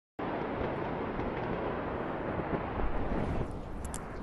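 Steady outdoor rumble with wind buffeting the phone microphone, swelling a little just past the middle and dropping off shortly before a few sharp clicks near the end.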